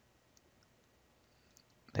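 Near silence with a few faint clicks of a stylus on a tablet during handwriting. A man's voice starts just at the end.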